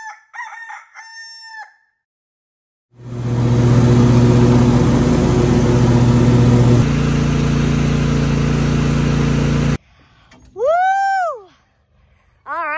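A few short pitched calls, then a loud, steady, noisy drone with a low hum that changes note partway and cuts off suddenly. About a second before the end, a rooster crows once in a single rising-and-falling call.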